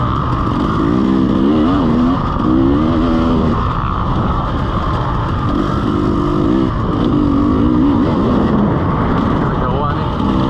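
2017 KTM EXC 300 two-stroke enduro bike engine running hard under way, its pitch rising and falling repeatedly as the throttle is worked, over a steady rough rush of noise.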